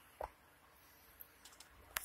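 Quiet handling noise: a soft knock about a quarter second in, a few faint ticks, then a sharp click near the end.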